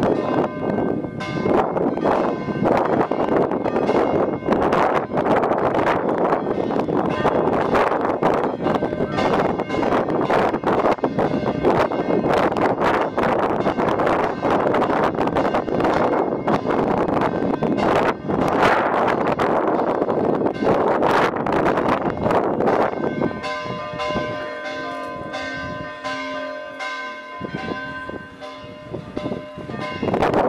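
Church bells rung rapidly in a continuous clangour of strikes. About three quarters of the way through the striking stops and the bells' tones hum on, fading.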